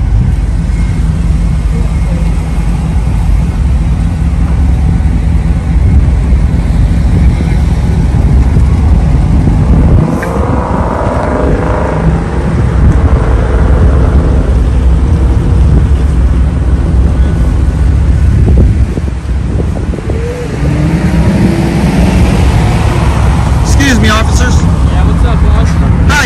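Road traffic noise: a steady low rumble of passing cars, with faint, indistinct voices now and then.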